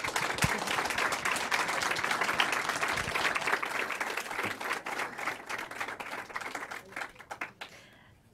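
Audience applauding, a dense run of many hands clapping that thins out and fades away near the end.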